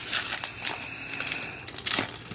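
A trading-card pack's wrapper crinkling and crackling as it is handled and opened, with a sharper crackle near the end.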